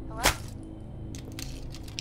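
A mobile phone crushed in a hand: one loud sharp crack about a quarter second in, then a run of small crunching clicks and crackles as the casing and screen break up.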